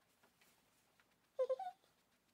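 Near silence with a few faint ticks, then one short, high-pitched vocal call about one and a half seconds in.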